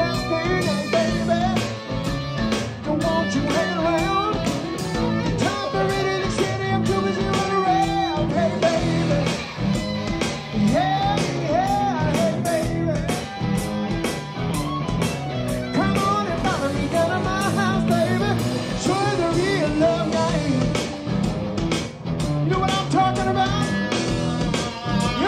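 Live rock band playing with electric guitars and a drum kit, a man singing lead over them.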